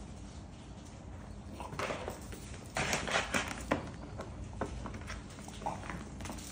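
A French bulldog in a plastic cone collar getting up and moving about on a concrete floor. Its claws click and the cone scuffs and rustles in irregular bursts that start about two seconds in and are loudest around the middle.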